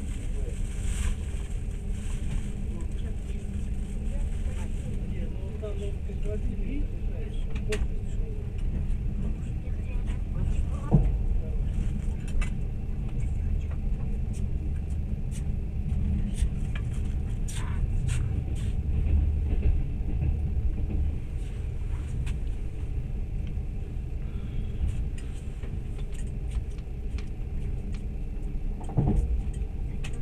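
A passenger train running along the track, heard from inside the carriage: a steady low rumble with scattered clicks and knocks.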